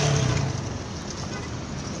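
Road traffic: a passing vehicle's engine hum that fades away over the first second, leaving a steady street rumble.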